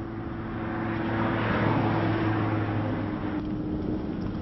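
Engine hum of a passing vehicle, steady and low, swelling about a second in and easing off near the end.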